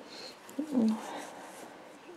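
A single short syllable from a woman's voice, with a falling pitch, a little over half a second in; otherwise only faint room noise.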